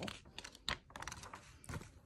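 Faint taps and rustles of a paper page being turned by hand and pressed flat: a few separate short clicks scattered through the moment.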